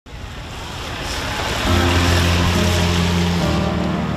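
Hiss of vehicle tyres on a wet road, swelling as traffic passes close by. Low, sustained music notes come in about halfway through and change pitch near the end.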